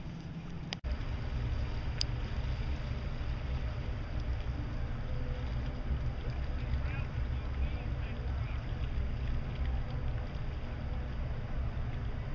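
Outboard motors of bass boats idling at low speed, a steady low rumble. A short click and a brief dropout come about a second in.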